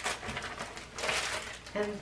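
Crinkling and rustling of a clear plastic bag of packaged embroidery threads being handled and set down, with a stronger burst of rustling about a second in.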